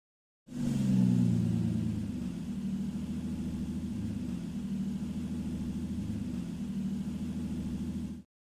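A Toyota Celica's engine idling. It comes in abruptly about half a second in, is loudest over the first second or two, then settles into a steady low idle.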